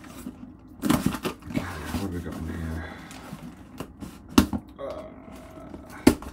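Cardboard shipping box being opened by hand: flaps pulled and scraping, and packing tape worked with a small screwdriver. There is a loud rip about a second in and a sharp snap just after four seconds.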